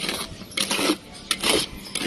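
Mason's trowel scraping and scooping wet mortar in a basin: about four short, rasping scrapes with metallic clinks.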